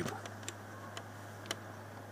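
A few faint, short ticks about every half second, one a little louder about a second and a half in, over a steady low hum.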